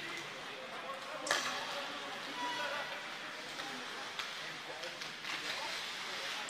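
Live ice hockey rink sound: skates carving on the ice, with one sharp scraping hiss about a second in, and a few lighter knocks later. Faint voices echo in the arena.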